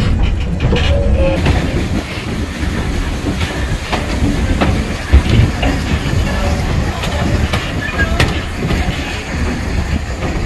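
Train running on rails: a steady low rumble with the clatter of wheels over rail joints.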